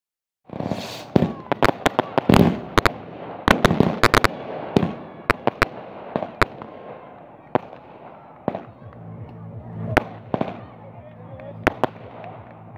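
Firecrackers going off in a rapid string of sharp bangs, densest in the first half and then thinning to a few scattered bangs.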